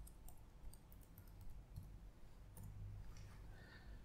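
Faint, irregular clicking of computer keyboard keys as text is typed, over a low steady hum.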